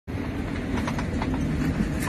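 Steady low rumble of an airliner's passenger cabin, with a few faint clicks scattered through it.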